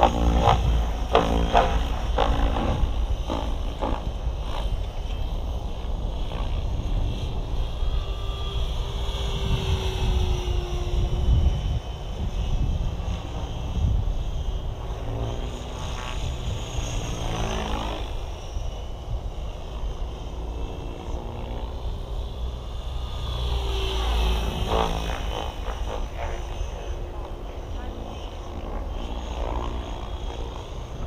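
Align T-Rex 760X electric RC helicopter flying at low head speed, its rotor and motor whine rising and falling in pitch as it moves about the sky. Wind buffets the microphone throughout as a low rumble.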